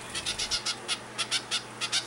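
Hand-fed zebra finch fledgling, about three weeks old, giving a rapid string of short chirping calls, several a second. These are begging calls: it is asking for more food although it has just been fed to fullness.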